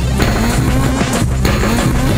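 Experimental instrumental beat played from a Roland SP-404SX sampler: dense layered sampled sounds over a heavy low end, with a brief drop in the upper layers a little over a second in.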